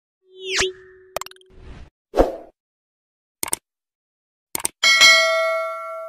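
Subscribe-button animation sound effects: a sweeping swish, several short clicks and pops, then a bell ding that rings out for about a second and a half.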